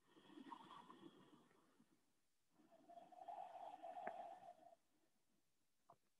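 Near silence with two faint slow breaths, the second longer, about two seconds.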